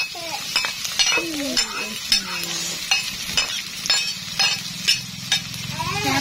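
Sliced lemongrass, shallots and chilies sizzling as they hit hot oil in a metal wok, with a metal spatula scraping and clinking against the wok about twice a second as they are stir-fried.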